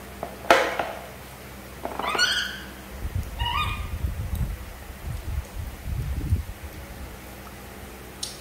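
Two short, squeaky animal calls, each with several overtones, about 2 and 3.5 seconds in. A sharp click comes before them, about half a second in, and low muffled rumbling follows, lasting a few seconds.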